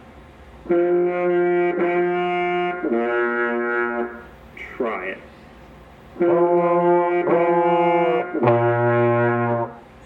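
Trombone playing two phrases of three held notes each, switching between F and B flat in a pattern for a learner to copy. There is a short pause between the phrases, and the last note is the low B flat.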